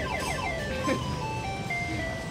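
Electronic fruit slot machine playing a beeping tune: a run of single electronic tones stepping down in pitch, with one higher tone near the end.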